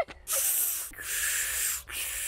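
Two breathy hisses of air through pursed lips, each under a second long: a man's failed attempts to whistle, with no clear note coming out.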